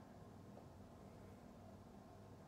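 Near silence: room tone with a faint steady hum.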